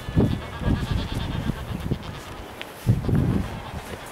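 Calls from a colony of nesting albatrosses and penguins, a run of overlapping calls. They are loudest just after the start and again about three seconds in.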